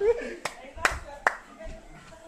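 Three sharp hand claps about 0.4 s apart, in the first second and a half.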